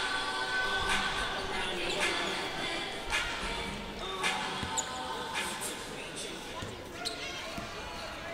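A basketball being dribbled on a hardwood court, about one bounce a second, over the murmur of the arena crowd.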